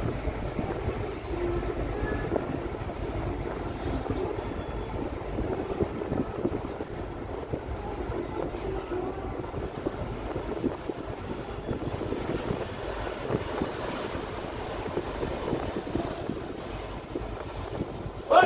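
Steady low rumble of the passenger ship KM Leuser underway, with wind buffeting the microphone and water rushing past the hull.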